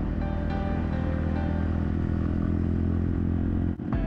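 Motorcycle engine running steadily while riding, heard from on the bike, with music underneath. The sound drops out briefly near the end.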